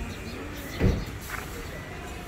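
A single short, low thump a little before the middle, over steady outdoor background noise with faint voices.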